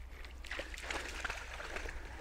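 Low sloshing and splashing of lake water as a dog swims and paddles near the shore.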